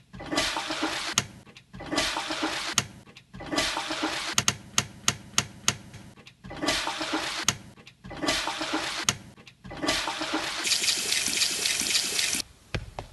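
A toilet flush from a wall-mounted cistern, chopped into repeated bursts of rushing water about every one and a half to two seconds, with sharp clicks in between, cut together into a rhythmic loop.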